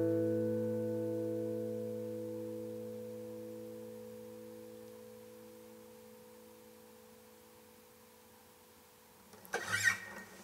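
The final strummed chord of an acoustic guitar ringing and slowly dying away to near silence. Near the end comes a brief burst of noise.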